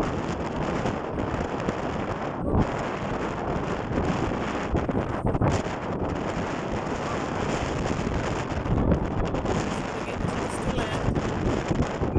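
Wind buffeting a phone microphone on the open deck of a moving ferry: a loud, uneven rush with gusts.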